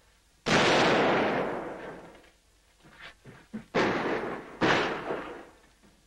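Artillery blasts during a siege: one about half a second in that fades slowly over more than a second, then two more close together near four and five seconds. A few small knocks come in the lull between them.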